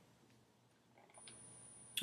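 Near silence: a dead-silent gap, then faint room hiss with a single faint click about a second and a quarter in.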